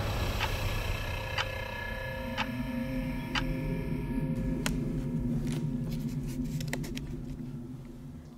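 Ticking-clock sound effect, about one tick a second, over a steady tone and a low drone that swells about two seconds in, fading out near the end.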